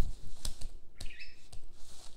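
A few sharp computer keyboard clicks as a typed word is deleted, with a brief high chirp about a second in.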